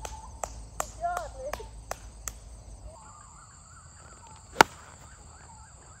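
A golf club striking the ball off fairway turf about four and a half seconds in: one sharp, loud crack. Before it comes a regular ticking, about three a second, in the first half, with faint bird calls.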